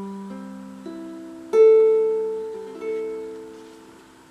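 Lanikai LQA-T tenor ukulele, a solid spruce top with quilted ash back and sides, strung in low G tuning, played by picking single notes one after another and letting them ring and fade. A louder pluck comes about one and a half seconds in, and the lowest note rings underneath.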